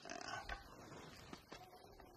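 A man's short low grunt or murmur, then a small sharp click about half a second in, as objects are handled and searched through.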